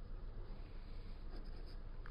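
Ballpoint pen writing on paper, a faint scratching as a symbol is drawn.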